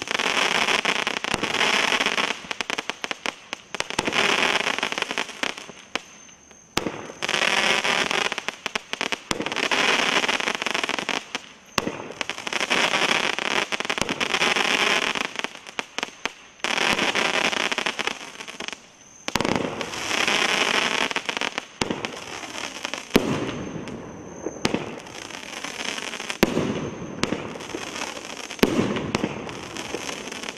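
A 500-gram multi-shot fireworks cake fires aerial shells in steady succession, about one every two to three seconds. Each launch and burst is followed by two or three seconds of dense crackling from crackle-star peony breaks.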